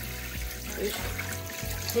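Tap water trickling into a steel pot as cooked rice vermicelli is rinsed clean under cold running water, with steady background music.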